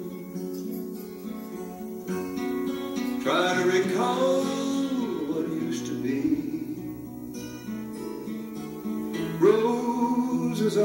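Background music: an acoustic guitar song.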